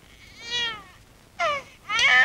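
Two high-pitched wailing cries: a longer one that rises and falls about half a second in, and a short falling one near the end.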